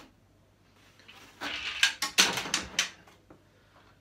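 Plastic back cover of a 32-inch LG flat-screen TV being pulled off its metal chassis and set aside: a quick run of sharp clacks and knocks lasting about a second and a half, starting a little over a second in.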